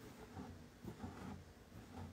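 Faint scratchy rustling of embroidery thread being drawn through cotton fabric stretched taut in a hoop, a few soft strokes.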